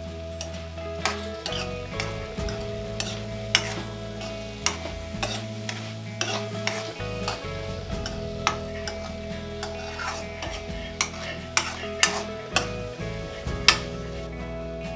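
A spatula stirring fried chana dal in a metal kadai: scrapes and sharp clinks against the pan every second or so, louder toward the end, over a soft sizzle. Soft background music with held notes runs underneath.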